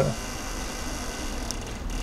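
Steady low background hum between spoken phrases, with a faint click about one and a half seconds in.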